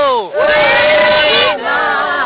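A group of voices chanting together, a traditional Dawan (Atoni Pah Meto) work cry sung to spur on the land clearing: a call that slides down in pitch at the start, then several voices holding a long note that breaks off about a second and a half in before the group starts again.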